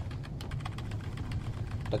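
Typing on a computer keyboard: a quick run of keystrokes, one key pressed over and over to type a row of X's, finishing with the Enter key.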